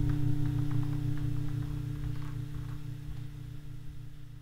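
The last chord of a Telecaster-style electric guitar dying away through its amplifier, leaving a steady amplifier hum as the sound fades out, with a few faint string clicks.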